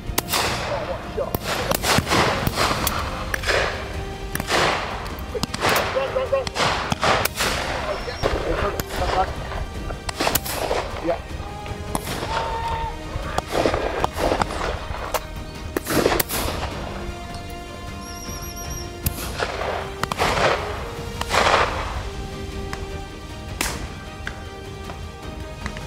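Shotguns firing again and again at driven pheasants and partridges: a long irregular run of sharp reports, many in quick pairs, each with a short echo. Background music with sustained notes plays underneath.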